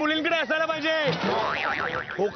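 A man's voice says a word, then a little past halfway a warbling whistle-like tone wavers rapidly up and down, about six swings a second.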